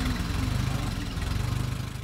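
Silver King Model 450 tractor's Continental 162-cubic-inch four-cylinder engine idling steadily, a few seconds after starting.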